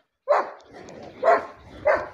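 A pen of weaned piglets, about 50 days old, giving short, sharp squealing calls, three in two seconds, the last two close together.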